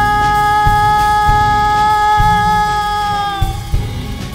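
Live orchestral rock music: a male vocalist holds one long high note that tails off about three and a half seconds in, over orchestra and regular drum hits.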